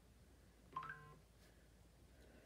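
A short electronic beep, a cluster of steady tones lasting under half a second, about a second in; otherwise near silence.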